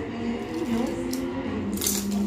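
Dinner-table sounds: food and dishes being handled under low background voices, with one brief sharp noise near the end.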